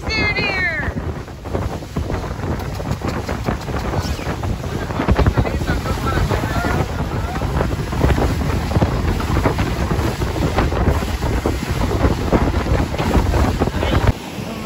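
Panga's outboard motor running under way through rough swells, with heavy wind buffeting the microphone and the hull knocking and splashing over the waves. A brief high-pitched gliding cry comes right at the start.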